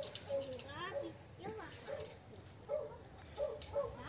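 Faint, distant voices: several short utterances with gliding pitch.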